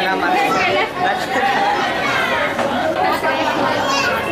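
Crowd chatter: many people talking at once, their voices overlapping steadily.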